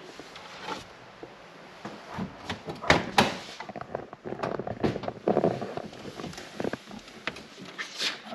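A Lancia Delta Integrale's door being opened and handled: sharp latch clicks and knocks, two loudest about three seconds in, then scraping and rustling as someone leans into the cabin.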